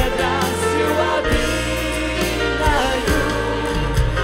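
A mixed church choir singing a Russian Christian song in Russian, accompanied by a live band with saxophone, trombone, violins and a steady bass line.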